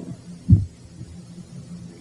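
A single brief low thump about half a second in, then a faint steady low hum from the recording.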